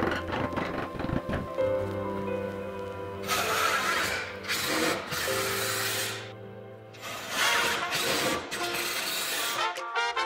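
A few knocks from a rubber mallet tapping a wooden slat into place. Then a cordless driver runs in four bursts, driving pocket-hole screws into softwood, over background music.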